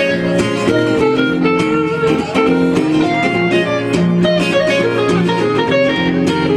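Guitar music played live: quickly picked single notes over sustained lower chord tones, in a steady run of many notes.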